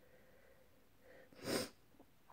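One short, sharp breath from the woman about one and a half seconds in, quiet next to her speech; otherwise near silence.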